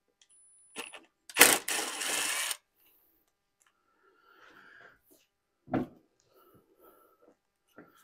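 Cordless drill driving a bolt on the engine: a sharp click as it bites, then about a second of steady motor whirring. A single knock of metal parts follows a few seconds later, with a few light clicks.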